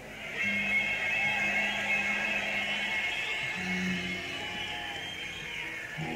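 Live rock band in a slow, quiet passage: electric guitar notes held and sustained over low bass notes that change once partway through, with no singing.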